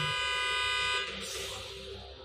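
A car horn gives one steady honk lasting about a second, then stops, over soft background music.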